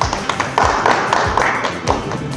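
Applause from a small audience, a quick run of hand claps, with music playing underneath.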